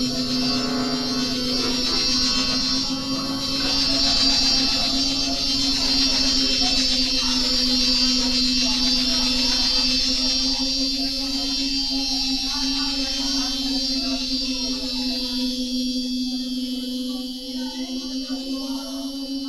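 Experimental electroacoustic music from accordion, sampler and effects: a steady low drone under a high shimmering layer, the texture thinning out near the end.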